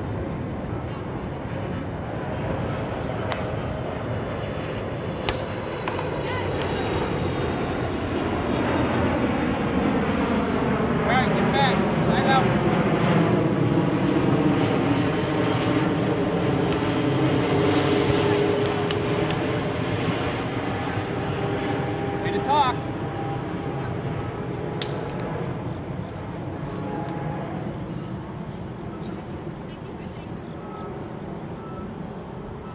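An aircraft passing overhead: its engine noise swells over several seconds to a peak around the middle and then fades away. Two sharp smacks of a volleyball being hit stand out above it, one early and one about three quarters of the way through.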